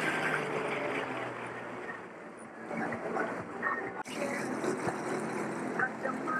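2018 Sea-Doo GTX Limited personal watercraft running under way on open water, a steady engine hum mixed with rushing water and spray, with a brief break about four seconds in.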